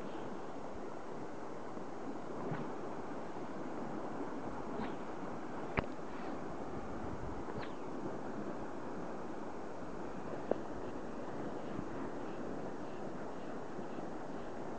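Steady rushing of flowing river current around a wading angler, with two sharp clicks, about six and ten and a half seconds in.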